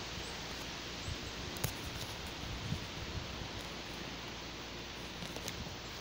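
Steady outdoor background noise, a soft even hiss like breeze and rustling leaves, with a few faint clicks.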